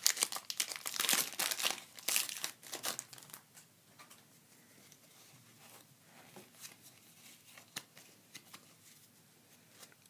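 Foil wrapper of a Pokémon card booster pack crinkling and tearing as it is opened, loud for the first three seconds. Then much quieter, with faint clicks of the trading cards being handled.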